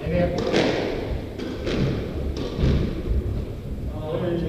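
A run of dull thuds and knocks on a wooden squash court, several a second apart, with faint voices in the background.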